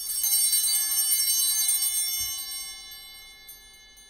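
Altar bells rung once, several high bell tones struck together and fading away over about three seconds. They mark the epiclesis of the Mass, when the priest calls down the Spirit on the bread and wine.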